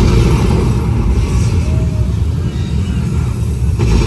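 Propane flame effect bursting into a fireball: a sudden deep rumble starts at once and runs on, with a second burst near the end.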